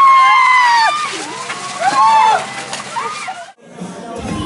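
Several people shrieking and yelling in long, high cries as buckets of ice water are tipped over them, with water splashing. The sound cuts off about three and a half seconds in.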